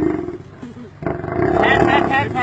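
A lion growling while men hold it down, in two long calls: one that ends just after the start, and another that begins about a second in. Men's voices shout over the second one.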